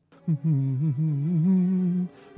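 A man humming a tune to himself. It wavers at first, then settles into a long held note.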